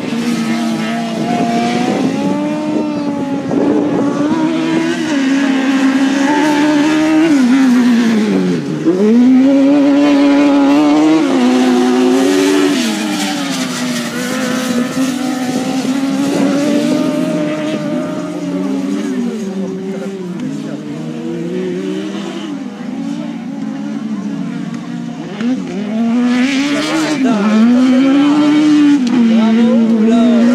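Race car engines running hard on a dirt track, the pitch climbing and dropping again and again as the cars accelerate, lift off and change gear. About nine seconds in, the revs drop sharply and then pick up again.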